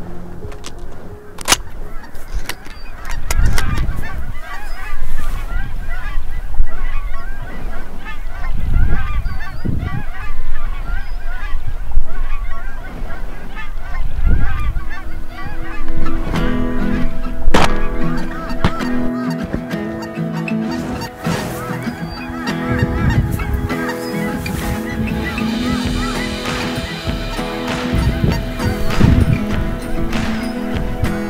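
A flock of geese calling, many short honks overlapping. Background music with long held chords comes in about halfway and runs under the calls.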